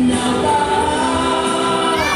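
Recorded song playing loudly, with a choir singing long held notes over the accompaniment.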